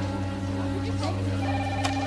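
Background score holding low sustained chords; about one and a half seconds in, a telephone starts ringing with a steady electronic ring, and a few sharp keyboard clicks come near the end.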